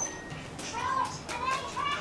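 Children's high-pitched voices chattering, quieter than close speech, with short rising and falling calls through the second half.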